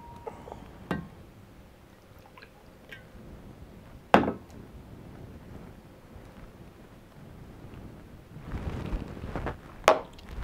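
A shot glass being handled on a bar counter: a faint click about a second in, a single sharp knock about four seconds in, and another sharp knock near the end, with soft handling noise before it.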